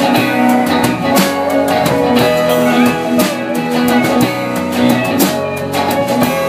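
A live band plays an instrumental passage led by electric guitar, with a steady beat and no singing.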